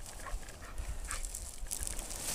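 An English springer spaniel panting in short, breathy puffs just after a retrieve.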